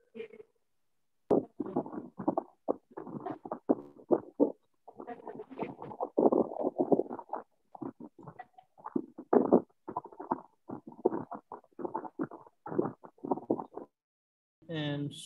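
A voice coming through a video call in garbled, choppy fragments that keep cutting out to silence: the internet connection is breaking up and the words can't be made out.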